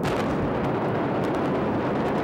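Demolition explosives and pyrotechnics going off at a hotel tower: a sudden blast at the start, then a continuous loud rumble full of rapid crackling pops.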